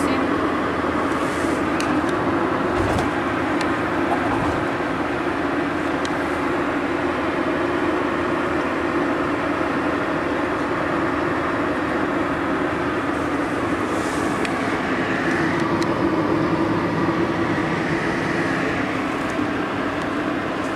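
Steady road and engine noise of a moving car, heard inside the cabin.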